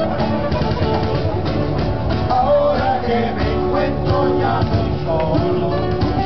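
Live acoustic guitars strumming chords while a group of men sing together into microphones.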